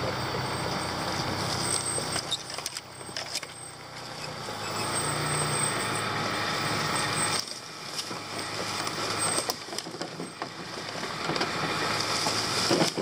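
1999 Honda CR-V's four-cylinder engine running as it crawls over a rough bush track, with scattered knocks and rattles from the body and its roof load. The engine eases off about halfway through, then picks up again near the end.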